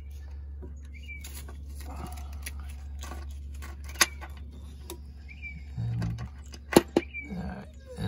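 Faint scratching and handling of a thin wire and steel bolt being pulled up into a rusty upper shock mount hole on a Jeep Cherokee XJ's body, with two sharp metallic clicks, one about halfway and one near the end, over a steady low hum.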